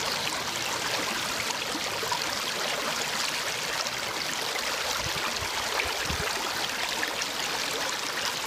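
Shallow creek water running steadily over stones and pebbles.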